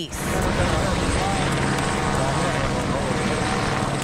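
Helicopter flying overhead: a steady, rapid rotor chop with engine noise, holding level throughout.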